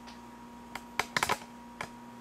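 Sharp clicks of computer controls being worked: one about three-quarters of a second in, a louder one at about a second, a quick cluster of three or four just after, and one more near the end.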